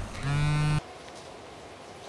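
A mobile phone buzzing on vibrate: one short, steady buzz lasting about half a second in the first second.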